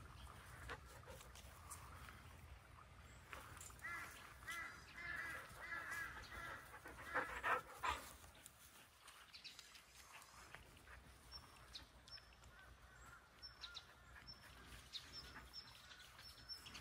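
Faint animal calls: a run of short, repeated high calls a few seconds in, then a few thin, short high chirps later, over a low steady background rumble.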